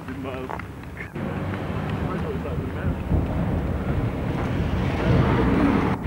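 Indistinct voices over outdoor background noise and wind on a home camcorder's microphone. About a second in, the sound jumps suddenly to a louder, rougher noise.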